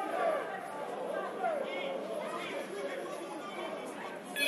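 Indistinct overlapping chatter and calls from players and spectators, with no clear words.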